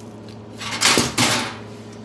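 A sanding disc being fitted to the hook-and-loop pad of an electric orbital sander: a short rasp lasting just under a second, over a faint steady low hum.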